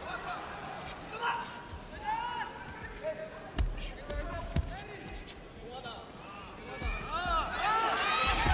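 Dull thuds of judoka stepping and pushing on tatami mats during grip-fighting, several through the middle and end, under voices shouting in the hall that grow louder and busier near the end.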